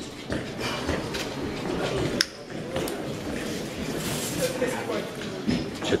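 Indistinct background chatter of several people echoing in a large gym hall, with one sharp click about two seconds in.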